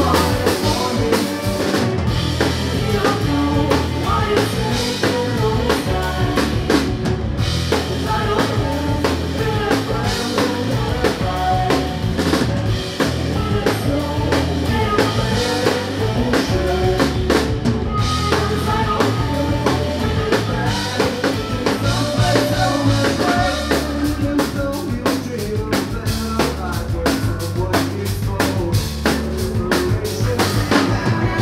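A rock band playing live: drum kit, electric guitar, bass guitar and keyboard, with the drums prominent.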